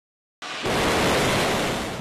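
Missile rocket motor running at launch: a steady rush of noise that starts abruptly about half a second in and swells a moment later.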